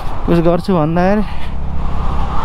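Motorcycle engine running steadily while riding along a gravel dirt track, a low even hum under a man's drawn-out hesitant voice in the first second.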